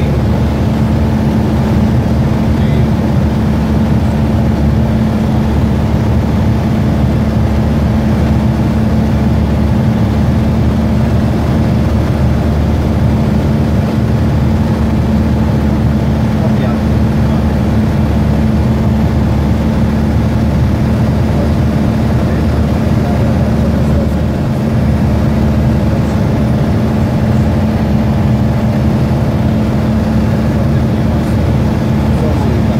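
Aircraft cabin noise: engines and airflow give a steady, loud drone with a constant low hum that does not change.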